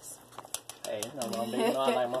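A quick run of uneven clicks from a spice jar being shaken over the cooking pot, then a person talking from about a second in.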